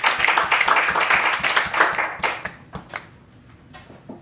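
A small group of people clapping by hand, the applause thinning out and dying away about three seconds in.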